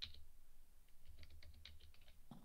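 Faint keystrokes on a computer keyboard: a click or two at the start, then a quick run of key presses in the second half as a word is typed.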